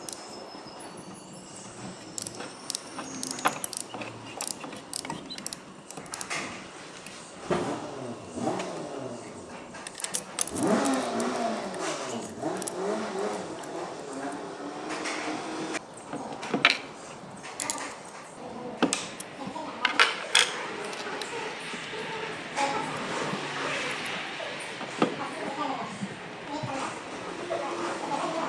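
Scattered metallic clinks and jingles from the cam chain and camshaft sprocket of a Honda 110cc single-cylinder engine being handled, along with clicks of the socket as the crankshaft is turned to line the sprocket up for cam timing.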